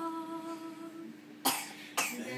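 A woman's voice holding the end of a sung phrase, unaccompanied, fading out about a second in; then one short, sharp cough about one and a half seconds in.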